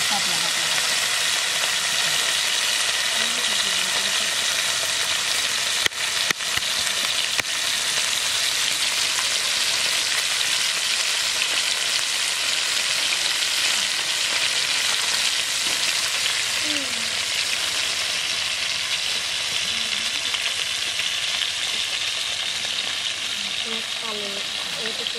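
Marinated rui (rohu) fish pieces frying in hot oil in a frying pan: a steady, loud sizzle throughout, with a few short knocks about six to seven seconds in.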